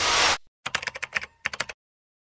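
A swelling whoosh that cuts off sharply, then a quick run of keyboard-typing clicks lasting about a second, as an on-screen web address types itself out. This is an end-card sound effect. It goes silent before the end.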